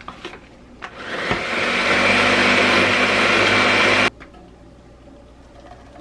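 Ninja countertop blender blending a thick spinach-banana loaf batter. After a few light clicks it spins up about a second in, runs steadily for about three seconds, then cuts off suddenly.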